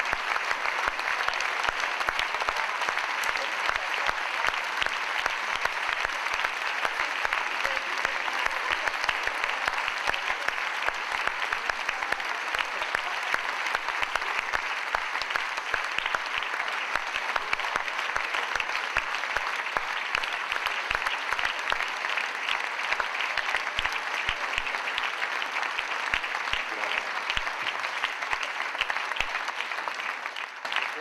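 A large theatre audience applauding, long and steady.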